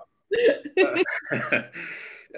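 People laughing over a video-call connection in short choppy bursts, after the sound cuts out briefly just after the start.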